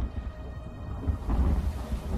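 Film soundtrack of a thunderstorm: a deep rumble of thunder over falling rain, swelling a little over a second in.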